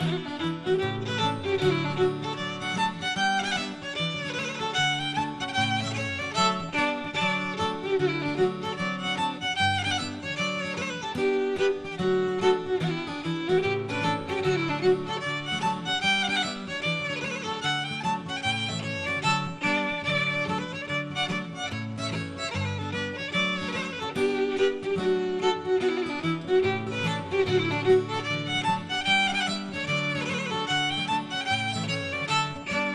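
Folk fiddle playing a lively hornpipe in quick, continuous notes, with a low accompaniment underneath.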